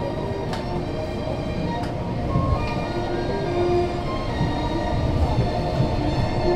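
Disney Resort Line monorail running, heard from inside the car as a steady low rumble.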